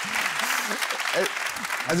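Studio audience applauding, with a few short bits of voices heard through it.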